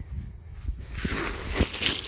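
Leaves and twigs rustling with a few crunching footsteps on dry leaf litter, louder from about a second in.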